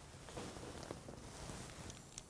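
Faint steady hiss of gas escaping from a Bunsen burner just after the bench gas tap is opened, before it is lit, with a few faint ticks of handling.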